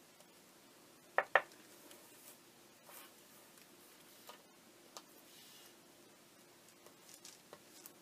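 Light tapping and handling sounds of a painting stylus and a small clay piece on a paper-covered work surface: two sharp taps in quick succession about a second in, then scattered faint ticks, over a faint steady hum.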